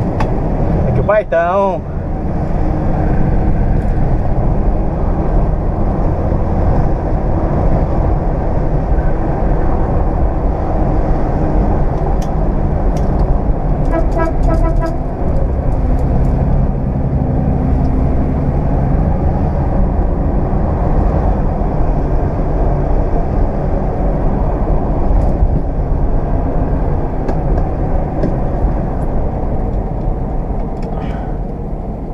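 Cabin sound of a 1969 Ford Aero Willys under way: its inline-six engine running steadily with road noise, heard from inside the car. About a second in there is a brief wavering tone, and around the middle a short run of rapid pulses.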